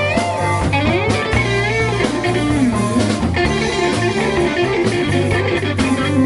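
Live blues band playing: an electric guitar lead with bent, wavering notes over bass guitar and drum kit.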